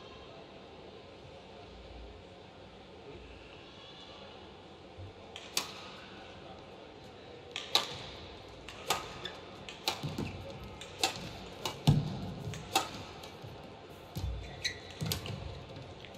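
Badminton rally: a shuttlecock struck back and forth with rackets, sharp cracks coming about once a second from five or six seconds in, with a few low thuds among them. Before the first stroke there is only a quiet, steady hall ambience.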